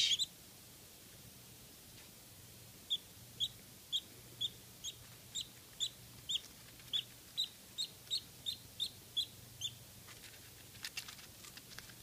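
Newborn Muscovy duckling peeping: a run of short, high peeps, about two a second and coming faster towards the end, starting about three seconds in and stopping just before the last two seconds. A few faint ticks follow near the end.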